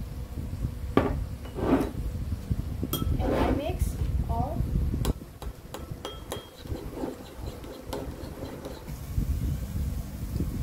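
Metal spoon clinking against a ceramic bowl as a soy-sauce and butter marinade is stirred: a scatter of short, sharp clinks. A low rumble of wind on the microphone runs underneath, heaviest in the first half.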